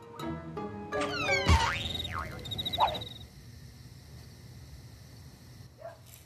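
Comedy transition music cue: a few short plucked notes, then quick falling whistle-like glides, a low thump about a second and a half in, and swooping glides with a short wavering cry-like effect. It gives way to quiet room tone for the second half.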